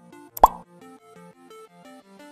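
Background music, a melody of short stepping notes, with a single loud 'plop' pop sound effect, a quick upward sweep in pitch, about half a second in.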